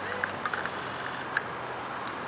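Lada Niva's engine running with a faint, steady low hum as the 4x4 crawls up a muddy slope, with a few sharp clicks about half a second in and again past the middle.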